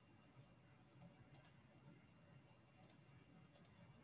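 Near silence: faint room tone with a few short, faint clicks, one about a second and a half in, one near three seconds and a quick pair near the end.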